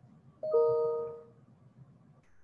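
A short electronic chime of two close notes, the higher one first, sounding about half a second in and fading out within about a second.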